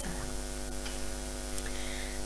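Steady electrical mains hum: a low, even drone with a ladder of steady overtones.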